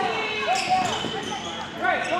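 Basketball shoes squeaking on a hardwood gym floor during play, a run of short squeals as players scramble for a loose ball.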